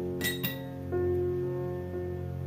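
Background music with steady sustained tones. About a quarter and half a second in come two quick, bright glass clinks with a short ring: a paintbrush tapping against the glass water jar.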